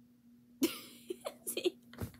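A woman laughing: a sudden breathy burst just over half a second in, followed by a few short, quick bursts of laughter.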